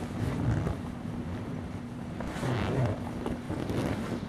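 Wind buffeting the microphone in uneven gusts, over a steady low hum from a motor.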